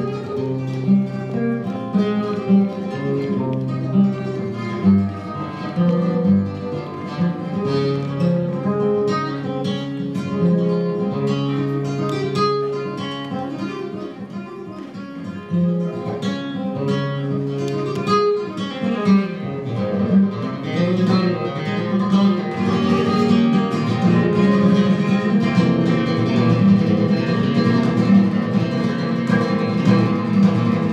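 Solo acoustic flamenco guitar playing a run of plucked notes. The playing grows busier and louder in the second half.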